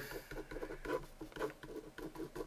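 Pen writing on paper: a quick run of short, faint scratchy strokes as letters and numbers are written out by hand.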